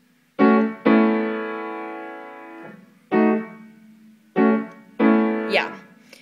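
Piano chords struck one at a time with the right hand: five chords, the second held and ringing out for about two seconds as it fades.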